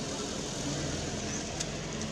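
A steady low engine hum, as of a motor vehicle idling, under a bed of outdoor background noise, with one short click about one and a half seconds in.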